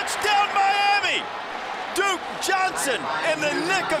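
Excited, shouted speech from a man's voice calling the play, with several long raised calls, over steady stadium noise and a few sharp knocks.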